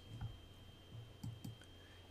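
A few faint, short computer mouse clicks, over a faint steady high-pitched whine.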